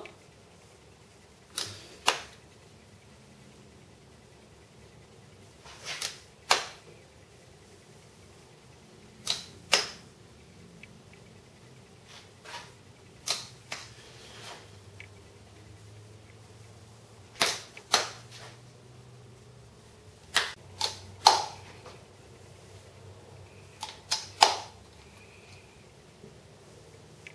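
Caulking gun clicking as its trigger is squeezed and released to push out gap filler. The sharp clicks mostly come in pairs about half a second apart, repeated every few seconds.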